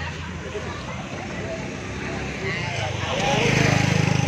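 A motor vehicle's engine passing close by on a street, growing louder about three seconds in and loudest near the end, over background voices.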